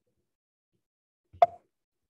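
Silence broken by one short, sharp pop about one and a half seconds in.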